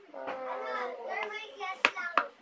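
A child's voice, not clear enough to catch as words, with one sharp click near the end.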